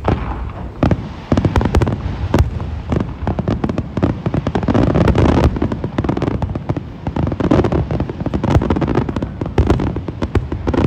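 A large aerial fireworks display: a dense, continuous barrage of shell bursts and sharp reports, many a second, with no let-up.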